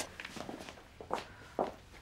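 Footsteps of people walking: a run of uneven steps.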